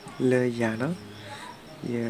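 A voice singing a long held note that glides down at its end, then starting another held note near the end. Crickets chirp faintly and steadily behind it, in an even pulse.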